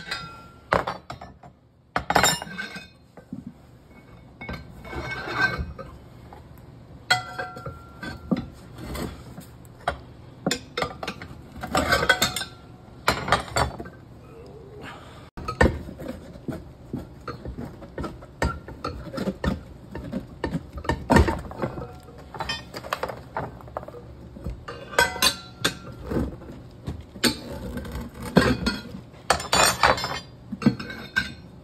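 Steel tire irons clinking, knocking and scraping against a John Deere wheel rim as a 16x6.50-8 turf tire is worked on and off the rim by hand. The metallic clanks come irregularly, some ringing briefly.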